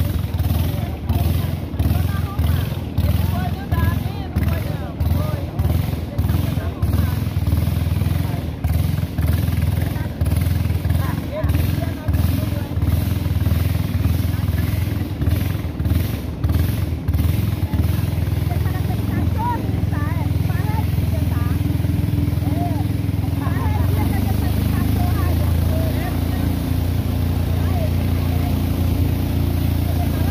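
A small boat's motor running steadily as the boat moves along the river, a low drone that pulses unevenly through the first half and then runs smoothly.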